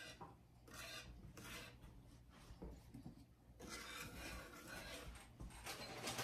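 Wire whisk stirring a melted butter and brown sugar mixture in a nonstick frying pan: faint, repeated scraping strokes against the pan.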